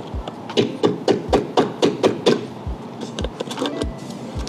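Motor oil glugging out of a large jug into a funnel in the engine's oil filler: a quick run of gurgles about four a second, thinning out in the second half.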